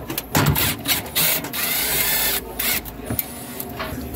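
Cordless drill-driver running in several short stop-start bursts, with one longer run in the middle, as it backs out the screws holding a cooler's evaporator coil.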